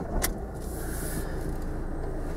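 A stalled car's engine restarted: a click, a brief whir as it catches, then a steady idle heard from inside the cabin.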